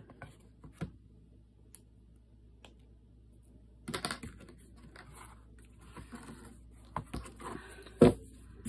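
Hands handling stiff book covers and paper pages on a cutting mat: a few light taps at first, then busier rustling and tapping from about halfway, ending in a sharp knock as a cover is lifted or set down.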